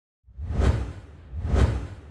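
Two whoosh sound effects of an animated logo intro, each swelling and fading with a deep bass rumble under it, the first about half a second in and the second about a second and a half in.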